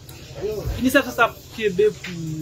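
Speech only: a man talking in French.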